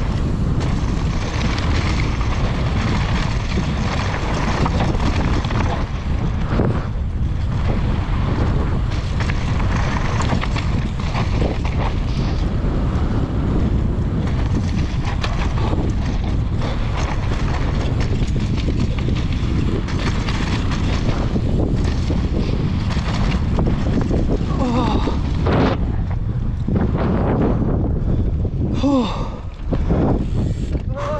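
Wind buffeting the action-camera microphone during a fast mountain-bike descent, over the steady rumble of knobby tyres rolling on loose dirt and gravel.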